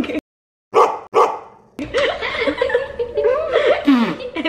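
Two short, sharp barks about half a second apart, each trailing off briefly, after a brief dead silence; voices follow.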